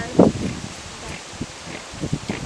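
Steady outdoor hiss of wind through foliage on the microphone, with one short loud sound just after the start and a few faint ticks after it.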